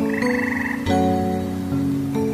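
Gentle instrumental sleep music of held plucked notes, with a single pulsed frog croak starting about a quarter second in and lasting just over half a second.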